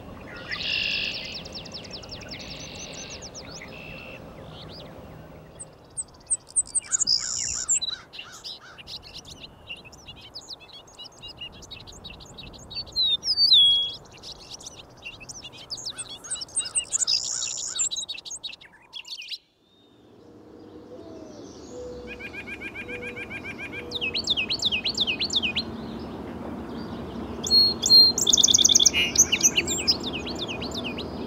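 Several songbirds singing in turn. A red-winged blackbird's trilled song comes at the start, an eastern meadowlark's whistled phrases come through the middle, and a song sparrow sings rapid phrases near the end. Each song is a separate field recording, with a brief break just past halfway.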